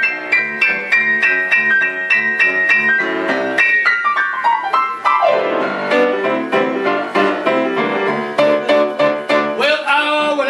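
Solo blues piano playing a boogie-woogie break in a steady rhythm, with a fast descending run down the keys about four to five seconds in.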